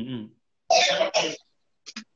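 A person clearing their throat: a short voiced hum, then two loud, rough coughs close together.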